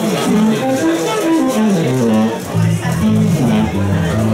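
Electric upright bass plucked in a swing-jazz walking bass line, stepping up and down from note to note, over the band, with light percussion ticking in time.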